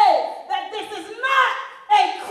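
A woman preaching into a handheld microphone, her voice amplified over loudspeakers.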